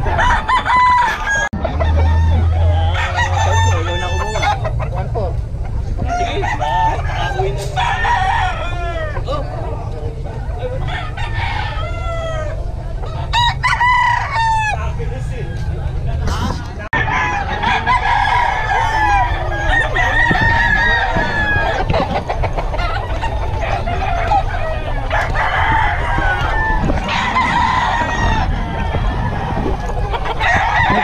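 Many gamecocks crowing one after another and over each other, with some clucking, as from a yard full of caged roosters.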